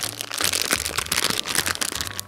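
Thin disposable plastic pastry bag crinkling as it is folded down and handled, a dense run of small crackles.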